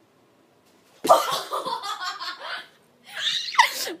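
After a second of quiet, a sudden loud burst and then a woman's squealing laughter. It dies down, and a second burst of laughter comes near the end.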